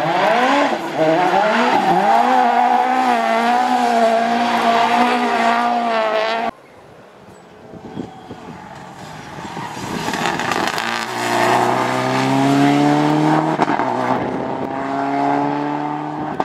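Rally car engines at full throttle: a Ford Fiesta RS WRC's turbocharged four-cylinder revs hard through a corner and holds high revs, then cuts off suddenly about six and a half seconds in. After a quieter moment a Subaru Impreza rally car's engine approaches, rising in pitch, drops once at an upshift, and rises again.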